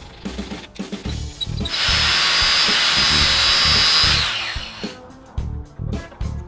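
Angle grinder cutting a steel ruler: a loud, high hiss with a steady whine lasting about two and a half seconds, then falling in pitch as it winds down, over background music with a steady beat.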